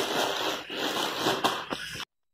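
Clear plastic bag of cut pumpkin crinkling and rustling as it is handled, a dense run of small crackles.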